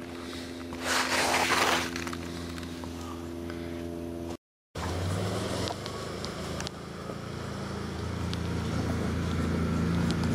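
A motor vehicle's engine running steadily, with a brief rush of noise about a second in. After a short dropout halfway, a lower engine hum grows gradually louder.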